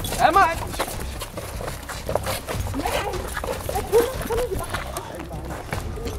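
A scuffle: voices shouting in short bursts over hurried footsteps and scattered knocks as people grab at each other and move off.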